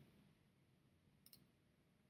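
Near silence, with two faint quick clicks a little over a second in, from a computer mouse.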